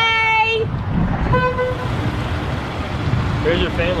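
Car horn honking twice: a half-second toot at the start and a shorter one about a second and a half in, over the low running noise of passing cars.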